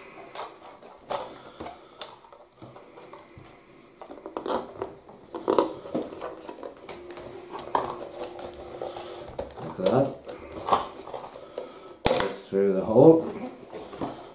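A cardboard filament box and a plastic spool being handled by hand: scattered light clicks, taps and scrapes as the filament end is fed out through the box.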